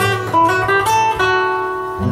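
Live Brazilian jazz band music, with a guitar playing a run of plucked notes and chords to the fore, about three or four notes a second.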